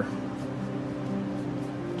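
Soft background music of sustained, held notes.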